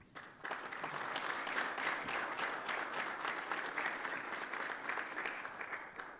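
Audience applauding. The applause starts about half a second in and dies away near the end.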